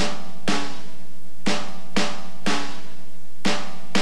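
A drum struck with sticks in a repeating rhythm: three beats half a second apart, then a one-beat rest, then three more. Each beat rings briefly with a pitched tone.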